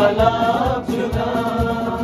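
Men singing a Sufi Kashmiri song together, the lead voice sliding between held notes, over harmonium and acoustic guitar. A steady low beat runs underneath, a few strokes a second.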